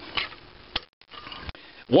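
Two small clicks, about three-quarters of a second apart, from cast-iron carburetor mixer bodies being handled on a workbench, over faint room noise with a brief moment of near silence between them.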